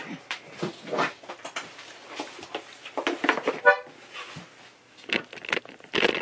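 Handling noise from a Dino Baffetti button melodeon being picked up and settled for playing: scattered knocks and clicks of wood, straps and buttons, with one brief honk-like reed note a little past halfway as the bellows shift.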